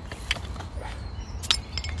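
A crown cap being levered off a glass beer bottle with a wooden bottle opener: a few light clicks, then one sharp clink about a second and a half in as the cap comes off.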